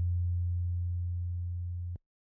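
The last low note of a corrido song's closing chord ringing out as a steady low hum and slowly fading. It cuts off abruptly near the end.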